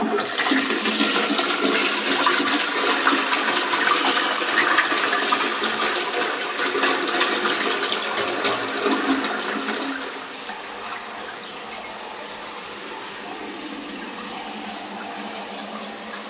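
Toilet flushing: a loud rush of water through the bowl for about ten seconds, then dropping to a quieter, steady run of water.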